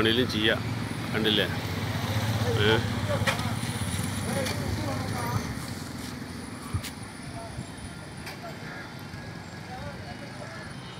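A motor vehicle's low engine hum with people's voices in the background, the engine fading out about halfway through and leaving a faint steady hiss.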